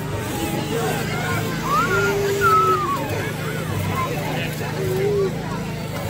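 Crowd chatter and children's voices over the steady low hum of a power tool cutting into a block of ice.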